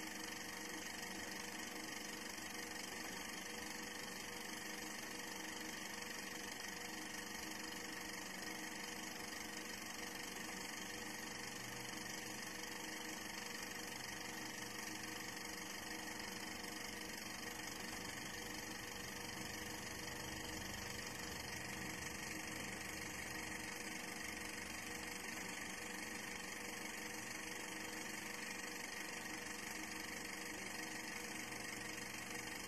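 Faint, steady hum and hiss with a few constant tones and no change in level, like a small motor running.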